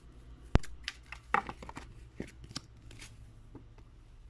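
Tarot cards being handled and shuffled: a string of sharp clicks and short rustles of card stock, the loudest a crisp snap about half a second in.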